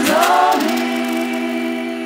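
Layered, choir-like sung vocals in an electronic house track. A phrase bends down in pitch, then a long note is held from about half a second in, slowly fading.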